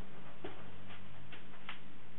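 Four light, sharp clicks about half a second apart, over a low steady hum.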